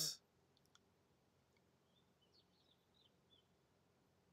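Near silence: room tone, with a few faint clicks early on and faint, short high chirps in the second half.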